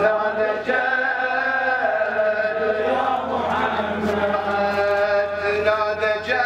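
A male reciter chanting a Shia Muharram lament (latmiya) into a microphone, in long, slowly bending melodic lines.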